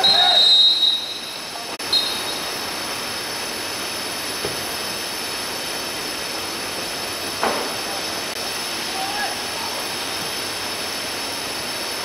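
Referee's whistle: one long, shrill blast of about a second, then a short second toot about two seconds in. Players' shouts come a few times later over steady outdoor hiss.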